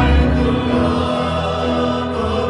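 Church worship music: a group of voices singing over held chords with a strong bass.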